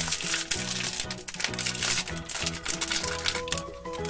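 A thin plastic foil toy wrapper crinkling and rustling as it is pulled open by hand, over background music.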